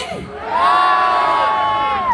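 One long held vocal note, shouted or sung, that swells up about half a second in and is held steady for about a second and a half, over crowd noise.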